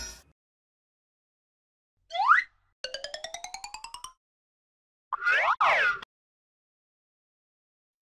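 Cartoon sound effects with silence between them: a quick rising whistle about two seconds in, then a fast run of short rising notes, about a dozen a second, for just over a second, then a springy boing about five seconds in.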